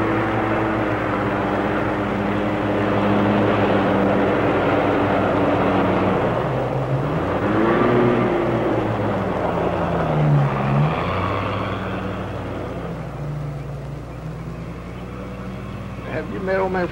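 Car engine running as the car drives past, its pitch dipping and rising twice around the middle, then growing quieter as it moves away.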